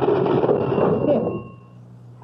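Radio-drama sound effect of an old mechanical cash register being opened: a clattering rattle of the keys and drawer, with the register's bell ringing on and dying away near the end.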